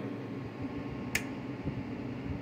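A single sharp click about a second in as the CB radio is keyed up with no modulation (a dead key) into the amplifier and dummy load, over a steady low background hiss.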